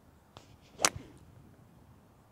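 A four iron striking a golf ball: one sharp crack a little under a second in, with a fainter click just before it.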